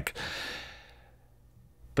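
A man's breath, a sigh-like exhale close to the microphone, fading out over about a second.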